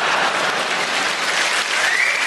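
Large audience applauding, a steady wash of clapping.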